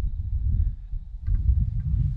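Low, uneven rumble of wind buffeting the camera microphone, with a couple of faint ticks.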